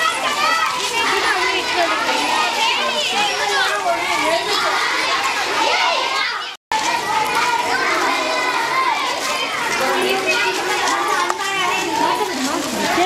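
A crowd of children's voices, many talking and calling out at once. The sound cuts out completely for a moment a little past halfway, then the voices carry on.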